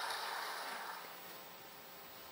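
Faint room tone: a soft hiss that fades away over the first second, leaving a steady low hum.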